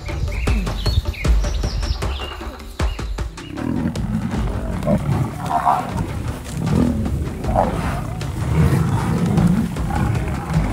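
Birds chirp for the first few seconds. Then, from about three seconds in, a lion growls and roars again and again as it is attacked by Cape buffalo.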